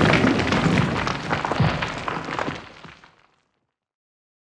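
Logo sound effect of stone crumbling: a dense rush of cracking and falling debris that fades away and ends about three seconds in.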